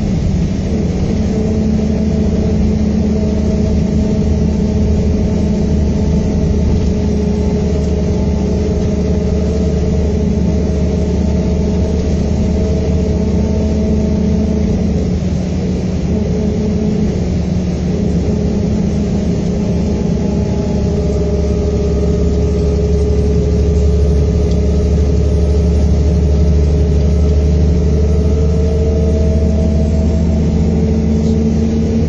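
Volvo B7R coach's six-cylinder diesel engine running steadily under way, heard from inside the passenger cabin with road and tyre noise beneath it. The engine note eases briefly about halfway through and grows a little louder in the last third.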